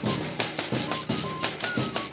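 Chirimía ensemble playing: a cane flute sounds short, high melody notes over the loud, rhythmic scraping of guacharacas and strokes of bombo and tambora drums.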